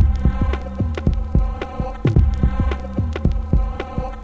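Electronic background music with a steady drum beat over sustained chords.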